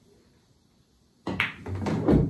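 After a quiet first second, a pool cue tip strikes the cue ball, then a second sharp click as the cue ball hits the 2 ball near the end.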